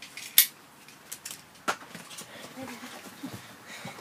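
Metal seat-belt buckle clicking and clinking as a demonstration belt is fastened and handled: a few sharp clicks, the loudest about half a second in.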